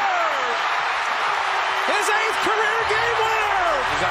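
Arena crowd cheering a game-winning buzzer-beater: a steady roar of many voices, with shouts and whoops rising and falling over it.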